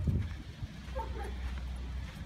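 A dog gives a short, faint whine about a second in, over a steady low rumble, with a low thump at the very start.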